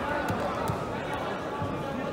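Sports-hall ambience: a murmur of voices echoing in a large hall, with several dull thumps about every half second.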